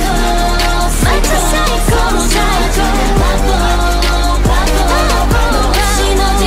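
K-pop R&B pop song: a female lead vocal line over a beat, with sliding bass notes falling about once a second.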